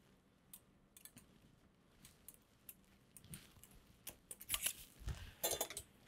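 Faint scattered clicks and light clinks of surgical instruments being handled as sutures are unwound from an all-suture anchor's inserter handle. About five seconds in there is a low knock followed by a cluster of louder clicks.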